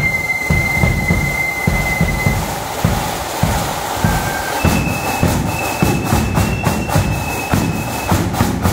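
Marching flute band playing: drums keep a steady march beat throughout, and the flutes hold long high notes in the first couple of seconds and again from about halfway.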